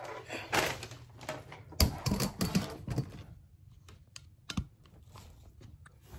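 Handling noise from a camera being moved and set up: a run of clicks, taps and knocks, the loudest about two seconds in, then a single knock later.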